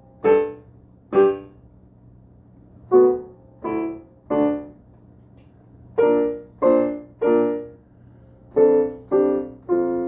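Digital piano played in slow, separate chords, each struck and left to die away, mostly in groups of three with short gaps between the groups.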